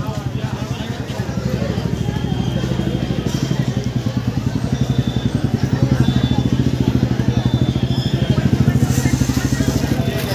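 A motorcycle engine running close by with a fast, even pulse, growing louder in the second half.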